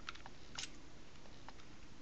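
A few faint metallic clicks from a Kahr K40 pistol's steel slide and slide stop pin being fitted by hand during reassembly.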